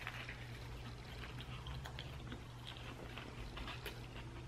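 Faint chewing of a mouthful of fried chicken sandwich: small scattered crunches and wet mouth clicks over a low steady hum.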